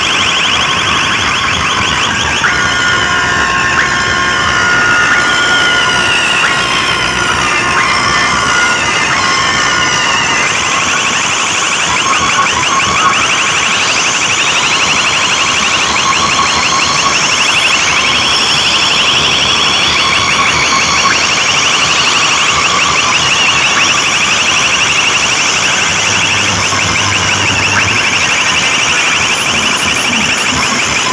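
A huge street DJ sound system blasts an electronic siren-like alarm effect at very high volume. It makes repeated rising sweeps for the first several seconds, then settles into a fast, steady warble for the rest.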